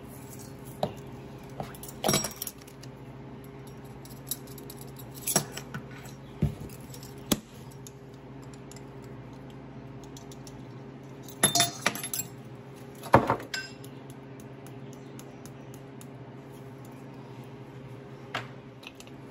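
Metal measuring spoons on a ring clinking together and tapping against a stainless steel mixing bowl and spice jars as seasonings are measured in. The clinks are short and scattered, bunched about two seconds in and again around twelve to thirteen seconds, over a steady low hum.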